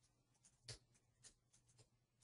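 Near silence with three faint, short clicks of computer keyboard keys.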